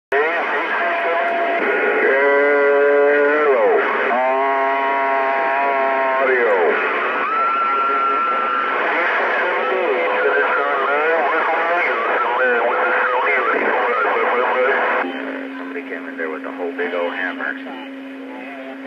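Stryker SR-955HP radio receiving distant stations: overlapping, garbled voices mixed with whistling, sweeping heterodyne tones and steady carrier tones. About fifteen seconds in it gets quieter, leaving a low steady tone under the chatter.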